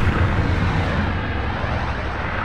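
Cinematic logo sound effect: a deep, rumbling boom tail that rings on and slowly fades after a run of impact hits.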